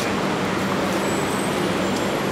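Steady urban traffic noise, an even background rumble and hiss with a faint constant hum.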